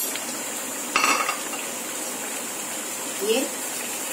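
Curry gravy simmering in a frying pan on a gas burner, a steady sizzling hiss, with a brief clatter about a second in.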